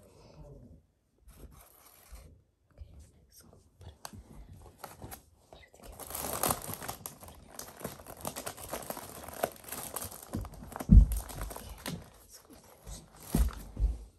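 Plastic Oreo cookie packet crinkling and rustling as it is handled, loudest from about halfway through, with two dull thumps in the last few seconds.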